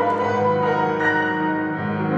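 Grand piano playing sustained, ringing chords, with a new chord struck right at the start and another change about a second in.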